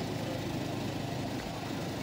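Steady low background hum of a supermarket aisle, with no distinct events.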